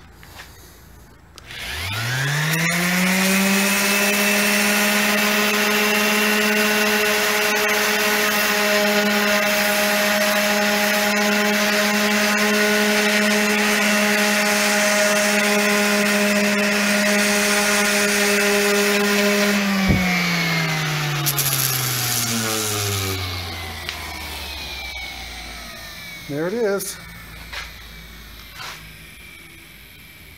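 Electric random orbital sander spinning up with a rising whine, running steadily for about eighteen seconds while it sands overhanging iron-on wood edge banding flush with a plywood edge, then switched off and winding down with a falling whine. A few light knocks follow near the end.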